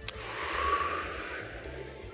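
A long, breathy breath through the mouth that swells and then fades over about two seconds, over faint background music.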